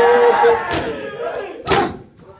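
A crowd of male mourners chanting a noha together, holding the last note of a line before it fades. Near the end comes one sharp, loud slap of hands striking bare chests in unison: sina zani, the rhythmic chest-beating of Muharram mourning.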